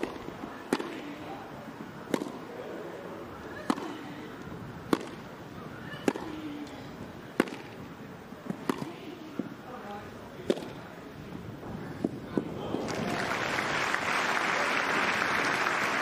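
Tennis balls struck by rackets in a long rally on a grass court, a sharp pock about every second and a quarter, a dozen or so hits starting with the serve. The point ends and crowd applause swells about thirteen seconds in and becomes the loudest sound.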